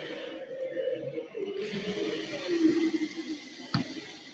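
Indistinct background sound of a large hall: a low murmur with a faint steady hiss that gets stronger about one and a half seconds in, and one sharp click near the end.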